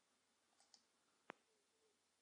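Near silence broken by a single sharp computer-mouse click a little over a second in, with two fainter ticks shortly before it.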